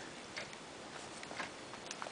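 A few faint, irregular ticks and light rustling from handling a spiral-bound scrapbook album as a cardstock page is turned by hand.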